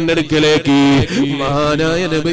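A man's voice chanting melodically, holding long steady notes broken by wavering, gliding ornaments.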